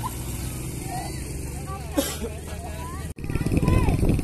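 Steady low hum of an idling motor vehicle engine, with faint chatter of people in the background and a brief sharp sound about two seconds in. Just after three seconds the sound cuts off, and a louder, rougher low rumble takes over.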